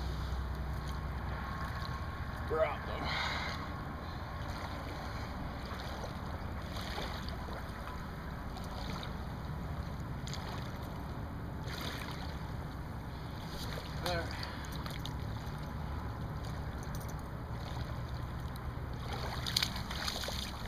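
Steady low outdoor rumble of wind on the microphone at the water's edge, with faint distant voices twice, about two and a half seconds in and again near the middle.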